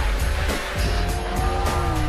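Motorcycle engine revving over a music score in a film-trailer sound mix, its engine note falling in pitch near the end.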